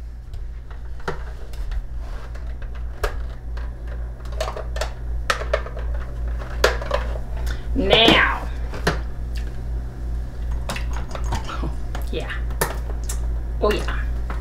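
Wire beaters of a hand mixer clicking and knocking against a stainless steel bowl and each other in scattered taps as they are lifted out and handled, over a steady low hum. A short falling vocal sound comes about eight seconds in.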